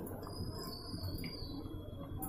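Quiet room tone with a low hum and a faint thin high whine, under faint soft sounds of cooked chana dal being tipped from a glass bowl into a plastic bowl.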